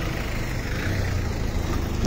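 Steady low rumble of a car engine running close by, over general street noise.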